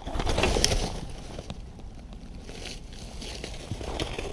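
Rustling and scuffing in dry leaf litter with a few knocks as a largemouth bass is hauled up the bank and grabbed, loudest in about the first second and then quieter.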